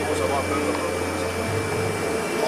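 Steady cabin noise inside a Boeing 737-200 jet airliner coming in to land: an even rush of engine and airflow with a steady hum underneath, and faint voices near the start.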